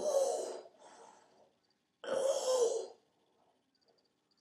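A man breathing out hard close to the microphone: two loud, breathy exhalations about two seconds apart, the first followed by a softer one.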